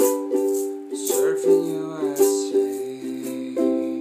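Soprano ukulele strummed with a pick in a steady rhythm, chords ringing between the strums.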